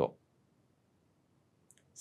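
Mostly near silence between spoken words: a word ends right at the start, then quiet room tone, with a faint short click just before the next word begins.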